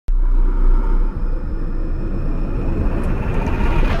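Intro sound effect: a loud, deep rumble that starts abruptly, with a faint tone rising slowly in pitch through it. It builds to a hit at the very end.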